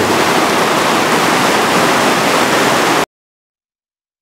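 Loud, steady rushing noise like static that cuts off suddenly about three seconds in, leaving silence.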